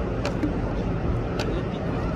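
Steady low rumble of outdoor city noise from traffic and a crowded street, with two short clicks, one just after the start and one about a second and a half in.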